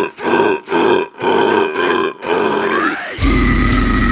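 Harsh growled vocals in short stop-start bursts over a deathcore track with the bass and drums dropped out, the last burst rising in pitch. About three seconds in, the full band comes back in with heavy guitars and drums.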